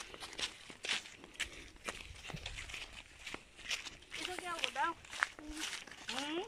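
Bundle of dry firewood sticks being handled, with sharp irregular clicks and rustles of wood on wood. A short burst of high voices sounds about four seconds in.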